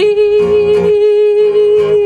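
A woman's voice holds one long sung note over a strummed acoustic guitar.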